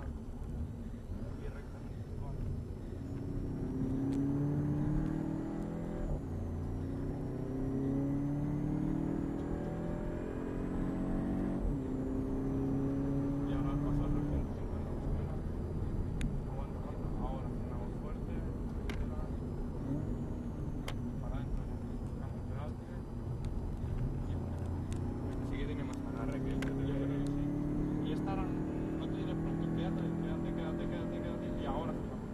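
Volkswagen Golf VII GTI's 2.0-litre turbocharged four-cylinder heard from inside the cabin under hard acceleration on track. Its note climbs steadily and drops back at each shift of the DSG gearbox, over steady road and wind noise.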